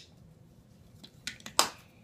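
Small clicks from handling makeup items: two light clicks a little after a second in, then one louder, sharper click.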